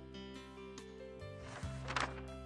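Quiet background music with sustained notes; near the end, a short papery swish from a page-turn transition effect.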